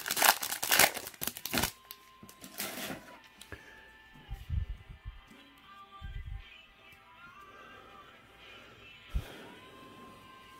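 Foil wrapper of a trading card pack crinkling loudly as it is opened and handled, mostly in the first couple of seconds. Quiet background music plays under it, with a couple of soft thumps later on.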